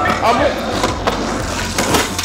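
Skateboard wheels rolling on pavement, with a few sharp clacks of the board partway through and near the end; a brief voice at the start.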